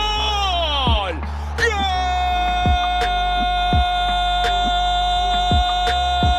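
An Argentine football commentator's drawn-out goal shout, a long 'goooool' held on one pitch that drops away about a second in, then a breath and a second long held shout. Under it runs a hip-hop style backing beat with deep bass and booming kicks.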